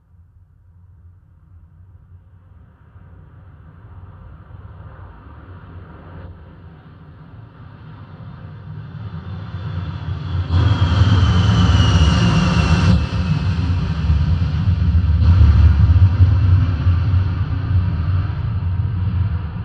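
A Boeing 747 jet takeoff from a Dolby Atmos demo, played through a Denon DHT-S218 soundbar and a Polk Audio MXT12 subwoofer. A deep engine rumble with heavy bass builds steadily from faint to loud. About ten seconds in, a whine slides down in pitch over the rumble.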